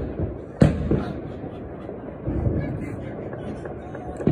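Explosive New Year's Eve bangs: a sharp, echoing bang about half a second in and a smaller one just after, over a steady rumble of more distant blasts that swells again near the middle.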